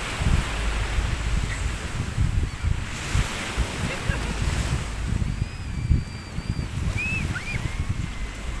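Surf washing onto a sandy beach, with wind buffeting the microphone in a steady low rumble. A few thin, high wavering calls come in over it near the end.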